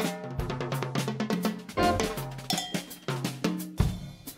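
Instrumental music with a busy drum-kit beat, quick snare and bass-drum strikes over a bass line.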